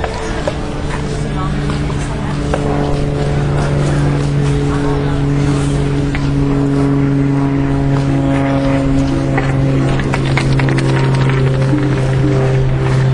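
A steady low droning hum of several held tones, growing slightly louder, with scattered clicks and indistinct voices under it.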